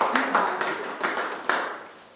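A small group applauding with scattered hand claps that thin out and stop before the end.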